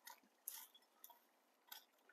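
Faint, short scrapes of a Warren hoe's pointed steel blade digging into loose soil: four brief scratches, the clearest about half a second in.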